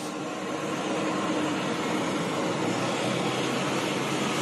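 Steady, even rushing noise of jet aircraft running on an airport apron, with a faint hum.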